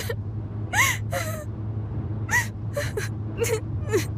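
A girl crying, with repeated short gasping sobs and whimpers, over a steady low hum of a van's cabin.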